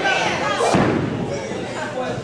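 Two thuds in a wrestling ring, one right at the start and a heavier one about 0.7 s in, as blows land on the kneeling opponent or bodies hit the ring, over shouting voices from the crowd.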